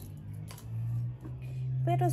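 A steady low hum, with a single light click about half a second in.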